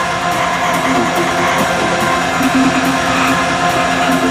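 Psytrance electronic music with a steady, fast beat under held synth tones.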